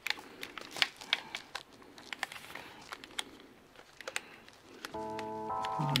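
Shotgun shells being pushed into the tube magazine of an Orthos Arms Benelli M4 clone shotgun: a run of sharp clicks and small metal snaps from the loading port. Music with steady held notes comes in about five seconds in.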